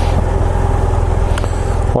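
BMW F800GS parallel-twin engine idling steadily, with one short tick about one and a half seconds in.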